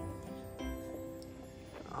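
Soft background music of sustained, held notes.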